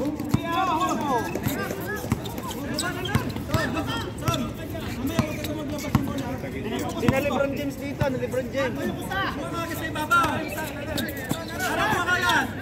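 Spectators and players chattering and calling out in overlapping voices, with short thuds of a basketball bouncing on a hard court scattered through.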